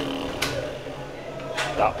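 Background murmur of voices with a single sharp click about half a second in, before a man starts speaking near the end.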